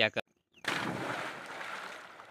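Water splashing around a person swimming in a pond. The rushing splash noise starts suddenly about a third of the way in and slowly fades.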